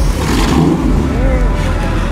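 Ford Mustang's engine running with a low rumble as the car drives off past, with people's voices over it.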